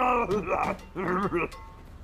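A voice making angry wordless noises: a held cry ending just after the start, then two short wavering grunts a little over half a second apart, over background music.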